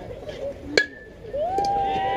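A metal baseball bat strikes a pitched ball once, about a second in, with a sharp crack that rings on briefly as a high ping. Half a second later spectators start shouting and cheering.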